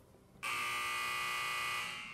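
Buzzer sound effect: a steady electronic buzz that starts suddenly, holds for about a second and a half and fades out.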